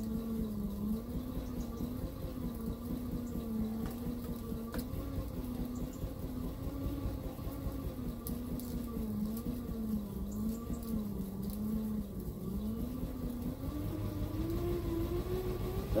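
Hoverboard hub motor spun by an exercise-bike flywheel pressed against its tyre: a steady whine over a low rumble that wavers in pitch with each pedal stroke. Near the end the whine climbs in pitch as pedalling speeds up from about 30 toward 60 rpm.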